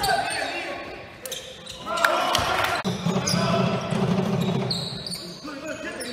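A basketball bouncing on a hardwood gym floor and sneakers squeaking, with players' voices shouting in the middle, echoing in a large hall.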